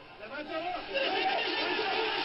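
Indistinct voices talking and chattering, no words clear, quieter than a close voice.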